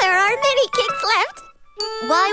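Animated characters' high voices calling out with sliding pitch over a children's music jingle with a twinkling chime. There is a short pause about a second and a half in, then the music comes back.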